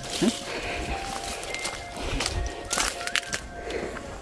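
Soft background music with long held notes, under rustling and the thud of footsteps on a dirt trail.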